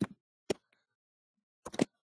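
Computer keyboard keys clicking in short bursts of taps: one tap about half a second in, then a quick cluster of several taps near the end.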